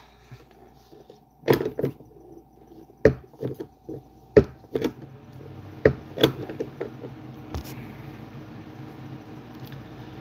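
Scattered knocks and clatters from a phone being handled and shifted, about eight of them over several seconds. A low steady hum comes up about halfway through.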